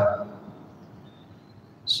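A pause in a man's speech. His phrase trails off at the start, then there is only faint hiss with a thin, faint, steady high tone, and his voice comes back in right at the end.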